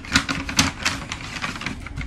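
Handling noise: a quick, irregular run of clicks and taps as a hand moves close to the microphone, picking something up.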